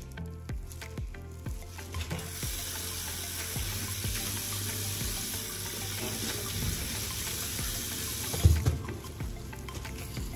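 Water running from a mixer tap into a ceramic bathroom basin as a sponge is rinsed under the stream. It starts about two seconds in and stops near the end with a low thump.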